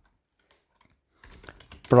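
Computer keyboard typing: near quiet at first, then a quick run of keystrokes starting a little over a second in.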